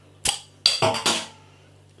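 Metal crown cap prised off a glass beer bottle with a bottle opener: a sharp click about a quarter second in, then a louder hissing pop of escaping carbonation with a brief metallic ring that fades within about half a second.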